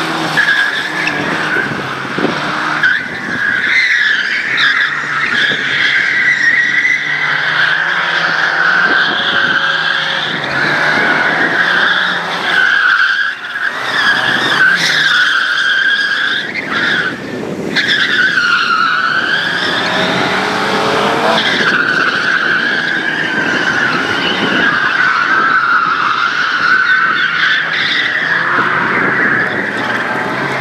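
Lada 2101 rally car driven hard and sliding: its four-cylinder engine revs up and down while the tyres squeal almost without a break, the squeal wavering in pitch. The sound drops out briefly twice, about halfway through.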